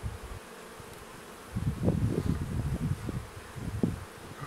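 Honeybees buzzing around an open hive with a brood frame lifted out, quieter at first and then louder and uneven from about a second and a half in.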